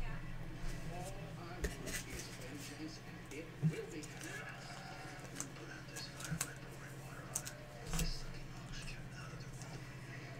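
Quiet room with a low steady hum and a faint voice in the background, broken by a few light clicks and taps, the clearest about four seconds in and again near eight seconds.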